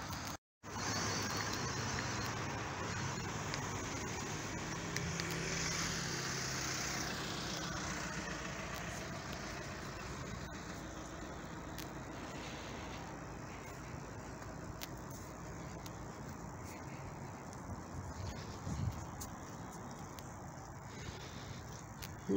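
Road traffic going by on a town street: car engines and tyre noise, loudest in the first third and then a steadier, quieter hum. The sound cuts out completely for a moment just after the start.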